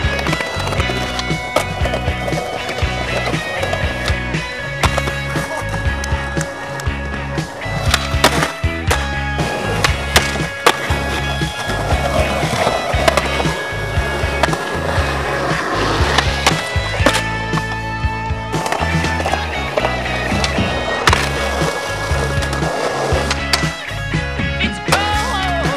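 A skateboard rolling and clacking, with several sharp board impacts scattered through, under a music track with a steady heavy beat.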